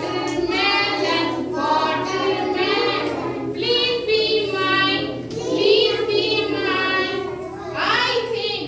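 Young children singing, in held phrases of about a second each.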